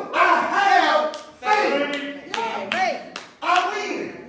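A voice calling out with emphatic, swooping pitch, punctuated by several sharp hand claps at irregular intervals.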